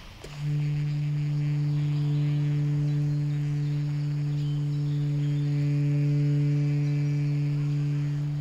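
A low, steady musical drone from the film's score: one sustained note that swells in about half a second in and holds unchanged, with fainter overtones above it.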